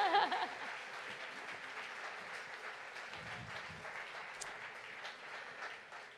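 Audience applauding, the clapping slowly fading away. A brief voice is heard right at the start.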